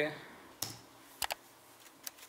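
Keystrokes on a computer keyboard: a single click a little over half a second in, then two quick clicks just past a second in, as the first letters of a comment are typed.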